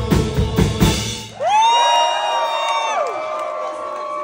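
A live band with drums plays the last beats of a song, which stops about a second and a half in. A single loud whoop from the audience follows, rising, held and then falling away, over the fading end of the music.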